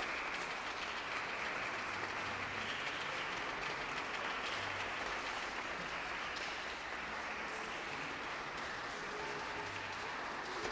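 Audience applauding steadily, greeting the violin soloist and conductor as they take the stage before the concerto.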